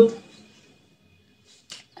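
A woman's voice trailing off at the end of a sentence, then a short pause of quiet room tone with a faint steady high tone, and a brief faint sound just before she speaks again.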